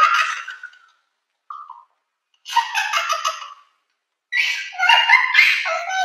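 Two girls laughing hard in three bursts, with short pauses between.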